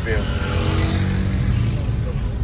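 Car cabin noise while driving: a steady low rumble of the engine and tyres on the road. In the first half, another vehicle's engine buzz swells and fades, likely an auto-rickshaw or motorcycle running close alongside.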